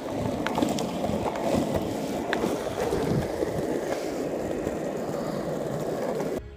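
Longboard wheels rolling over rough asphalt: a steady rumble with a few light clicks.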